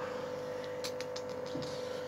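Steady low electrical hum with a few faint quick ticks about a second in.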